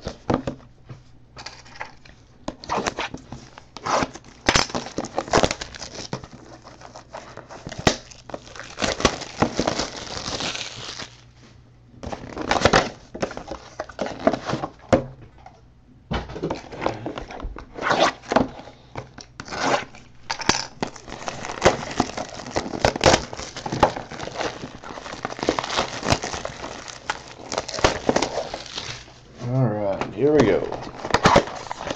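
Plastic wrapping on a trading-card box being torn and crinkled as the box is opened, with sharp clicks and taps of cardboard being handled. The crackling comes in irregular bursts and grows denser in the second half.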